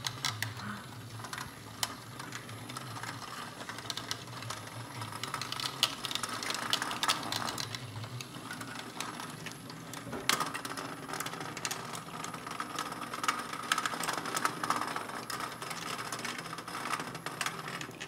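Several HEXBUG Nano Nitro vibration-powered micro robots running over a plastic habitat: a steady mechanical buzz from their vibration motors with a dense, irregular clatter of small clicks as they skitter and knock against the plastic walls.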